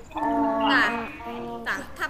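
A person's voice speaking, heard over a video call, with the drawn-out syllables of talking that fill most of the moment.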